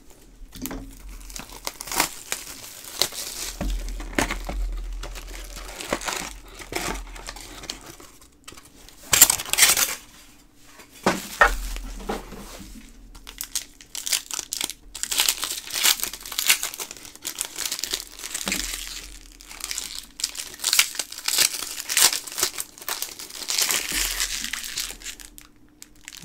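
Plastic shrink-wrap and foil trading-card pack wrappers crinkling and tearing as a sealed box of hockey cards is slit open and its packs unwrapped by hand, in irregular rustles with louder spells about a third of the way in and again past the middle.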